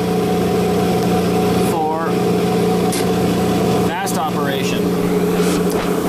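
Abrasive Machine Tool Co. Model 3B surface grinder running under power, its motor, driven from a VFD at about 55 Hz, giving a steady hum with constant tones while the table feeds at fast reciprocation speed.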